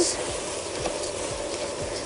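Basmati rice frying in ghee and oil in a pot, a steady sizzle, while a wooden spatula stirs through the grains.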